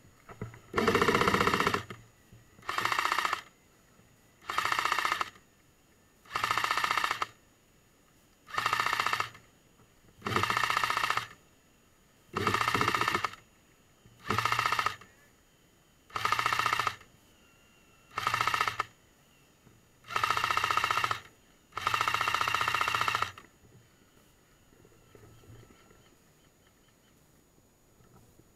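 Airsoft light support weapon firing on full auto in twelve short bursts, one about every two seconds, each a fast rattle of shots.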